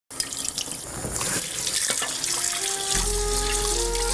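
Kitchen tap running water into a sink. Background music comes in about halfway through, with steady held notes.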